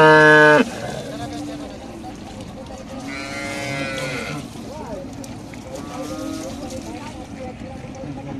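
Cattle mooing: a loud call that cuts off about half a second in, then a second, quieter call about three seconds in.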